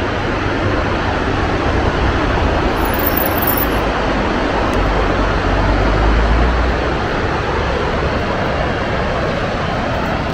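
Steady rushing roar of the Niagara River's whitewater rapids. A deeper rumble swells between about five and seven seconds in.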